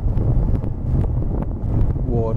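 Steady low rumble of road and wind noise inside a moving car.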